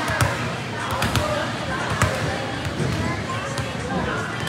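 A volleyball bouncing on a hardwood gym floor: about four sharp slaps, roughly a second apart, echoing in a large hall over a background of indistinct voices.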